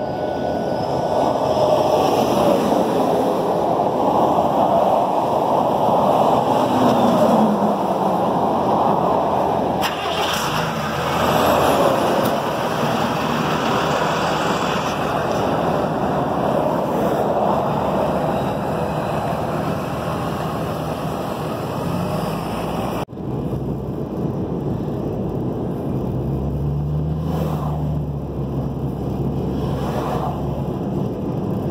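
Roadside traffic noise at night, swelling and fading several times as vehicles go by. After a sudden cut about two-thirds of the way through, a steady engine drone and road noise heard from inside the moving 2006 Mustang with its 4.0 V6.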